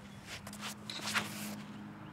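Quick footsteps and shoe scuffs on a concrete tee pad as a disc golfer runs up and throws a drive: a few sharp scuffs, the loudest about a second in. A faint steady hum runs underneath.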